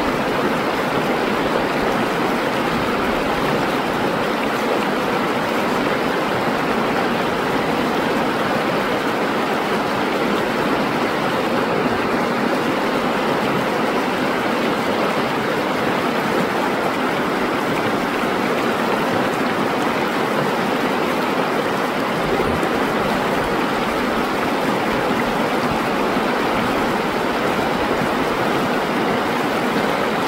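Shallow, fast river rushing over rocks: a steady, unbroken water noise.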